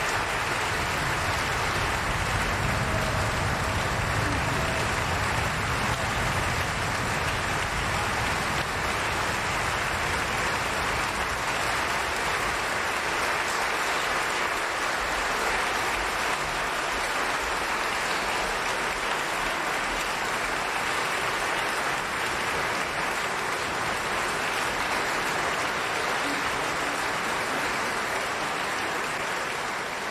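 Large concert-hall audience applauding, a dense steady clatter of many hands that starts to fade right at the end.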